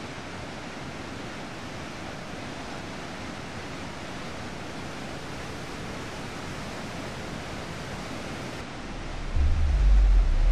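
Steady rushing of churning, foaming water. Near the end a deep low rumble swells in and the sound grows louder.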